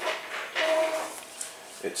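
Drive motors of a scratch-built CNC plasma cutter table homing the axes: a brief steady whine about half a second in, followed by a couple of faint clicks.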